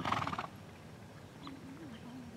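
A horse snorting: one short, fluttering blow through the nostrils lasting about half a second.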